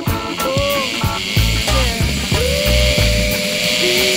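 Background music: a song with a repeating bass line and a melody that settles into one long held note from about halfway through.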